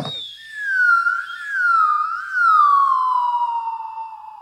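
A siren-like whistling tone with nothing else behind it. It wavers up and down twice, then slides slowly and steadily down in pitch.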